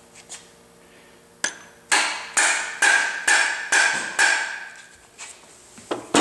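Dead blow hammer tapping an oil pump down onto a Ford 408W stroker block: a single knock, then six steady blows about two a second, each with a short metallic ring, to seat the pump over its driveshaft.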